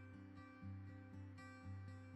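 Soft background music of plucked acoustic guitar, notes picked in a steady pulse.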